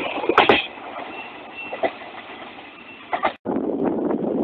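A train passing close by, its wheels clattering over rail joints in the first half second, then fading to a quieter rolling hiss with a faint high squeal. About three and a half seconds in the sound cuts out briefly and gives way to a steady low rumble with wind on the microphone.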